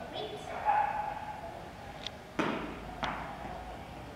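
Faint voices in a large indoor hall, then two sharp thuds a little over half a second apart, the first the louder, each with a short echo.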